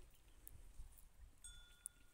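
Near silence, with a faint, steady high ringing tone in two pitches that sets in about one and a half seconds in, and a few faint clicks.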